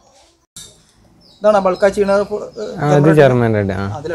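A man's voice speaking after a quiet pause of about a second and a half.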